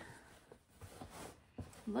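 Faint rustling of a cotton shirt being picked up and handled, with a few soft handling sounds.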